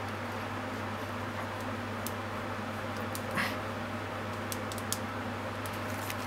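Steady hum of room and kitchen background with a few faint clicks, and a brief soft squelch about three and a half seconds in as mayonnaise is squeezed from a squeeze bottle over the food.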